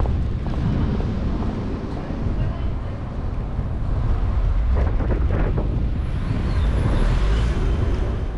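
Urban street ambience picked up by a walking handheld camera: a steady low rumble dominates, with a faint haze of voices and a few short sounds about five seconds in.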